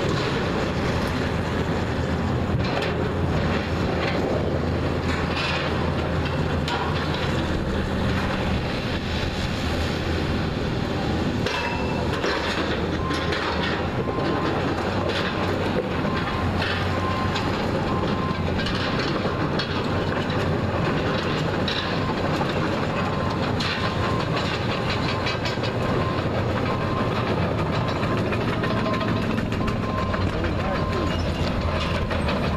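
A tracked hydraulic excavator with a grapple, its diesel engine running under load, demolishing a steel canopy: irregular clanks and crunches of steel beams and sheet metal. From about halfway through, a short beep repeats roughly once a second.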